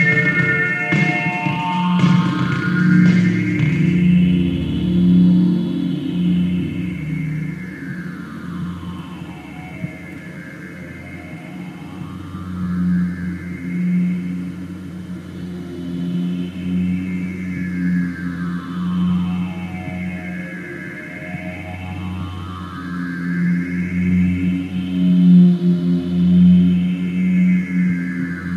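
Electronic drone music from analogue polyphonic synthesizers (Korg Poly 61), with a steady pulsing low note and a filter sweep that rises and falls slowly several times. A clicking rhythmic pattern fades out in the first couple of seconds.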